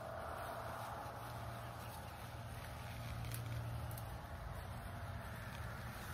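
Low, steady hum of a distant engine, swelling slightly a little past the middle.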